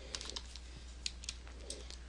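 Several faint, irregular taps on a computer keyboard, over a low steady hum.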